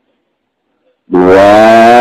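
Silence for about a second, then a man's voice comes in loud with one long held note, its pitch steady and rising slightly.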